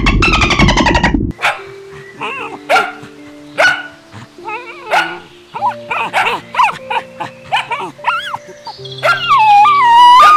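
For the first second, dolphins' rapid clicking and squealing calls. Then a dog gives short barks and yips with whimpering between them, ending in a long wavering whine near the end, over background music.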